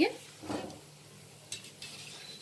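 Poha-potato balls sizzling gently as they deep-fry in hot oil in a kadhai, with a soft knock about half a second in and a couple of light clicks near the end.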